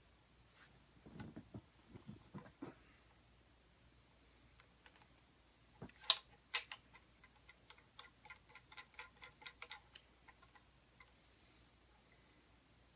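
Faint handling of a plastic phone-clamp head and selfie-stick tripod pole: a few soft knocks, a sharp click about six seconds in, then a run of light clicks, about four a second for some three seconds, as the clamp is twisted onto the top of the pole.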